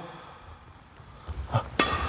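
Quiet hall tone for over a second, then soft low thuds of footsteps on the court floor. Near the end comes one sharp click with a short ring.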